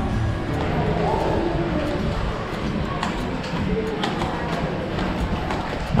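Music with sustained tones, under faint voices and a few light taps.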